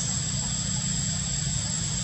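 Steady background drone: a low, even rumble with a constant thin high-pitched whine above it, unchanged throughout.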